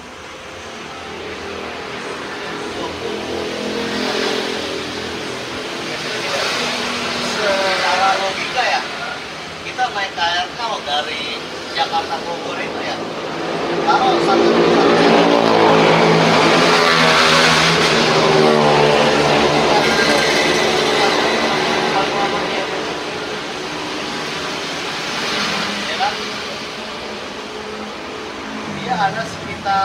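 A motor vehicle passing on the street, building up and loudest for several seconds in the middle before fading, with voices talking over it.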